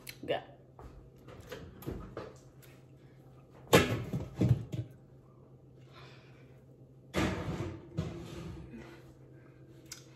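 A speckled enamel roasting pan going back into the oven. There are two sharp metallic knocks about four seconds in, then a longer clatter around seven seconds.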